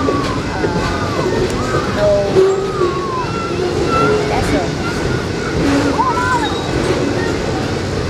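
Freight train of loaded flatcars rolling past with a steady rumble, with people talking indistinctly over it.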